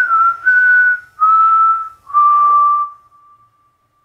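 A person whistling a slow falling phrase of four long held notes, each a little lower than the last, with breath audible around them; the last note fades away about three and a half seconds in.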